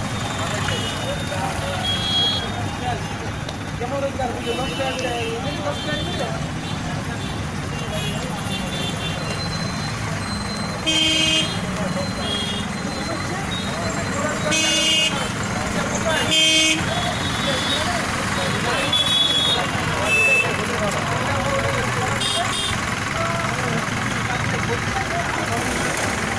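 Congested street traffic with a crowd of people talking: motorbikes and cars moving slowly, with several short horn toots, the loudest three close together in the middle.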